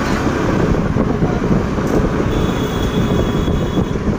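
Steady wind and road noise from travelling along a road, heaviest in the low end. A faint thin high tone joins in about halfway through.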